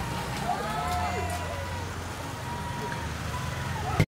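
Outdoor street race ambience: spectators' voices calling out over a steady low hum of motorcycle engines as a pack of road cyclists passes.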